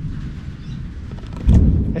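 Camera handling noise: an uneven low rumble as the camera is turned around, with a heavy low thump about one and a half seconds in.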